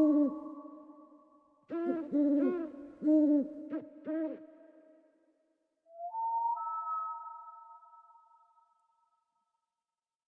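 Owl hooting: one call at the very start, then a quick series of short hoots, each rising and falling in pitch, between about two and four and a half seconds in. About six seconds in, a held musical chord comes in and slowly fades out.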